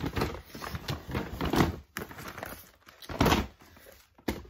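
Paper gift bag rustling and tissue paper crinkling as items are pushed back into it. There are three bursts of rustling with soft knocks, the loudest a little before the end.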